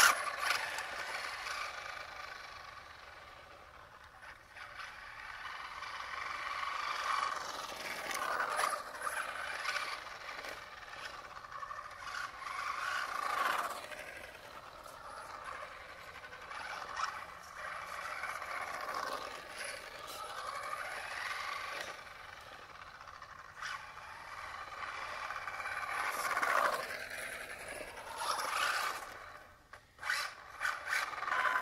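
A 3D-printed RC car's 4370 kV brushless motor whining, with tyre noise on asphalt. It is loudest in a short burst right at the start as the car launches, then rises and falls several times as the car speeds up and slows down far off.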